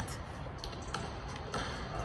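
A few faint taps of a basketball bouncing on a hardwood court, over a low steady hum.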